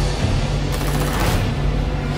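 Dark trailer score with a steady low drone, cut by a short, rapid rattling burst a little under a second in.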